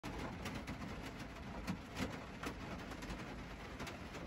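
Light rain falling, faint, with scattered drops ticking at irregular intervals.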